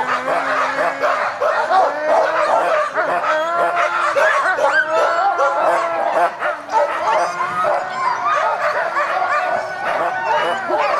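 A pack of harnessed sled dogs howling, yipping and whining all at once, many overlapping calls of different pitches, rising and falling without a break: the din that sled dogs raise while hitched and waiting to run.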